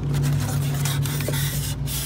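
Polystyrene foam packing rubbing and scraping against a cardboard box as it is handled, over a steady low hum.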